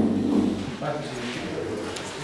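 Indistinct low male speech over the meeting microphones, loudest in the first half second, then breaking into fragments of words.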